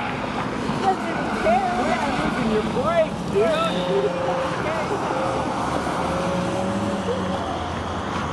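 A 2012 Volkswagen GTI with an APR Stage 1 tune and Magnaflow cat-back exhaust, lapping the racetrack, heard from a distance. Its engine note holds at a steady pitch for a few seconds past the middle, over a constant outdoor rush.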